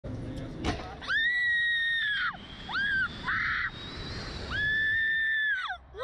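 Riders on a slingshot reverse-bungee ride screaming in long, high-pitched held screams as the capsule is launched. There are two long screams, one about a second in and one near the end, with a short one between, and a sharp click shortly before the first.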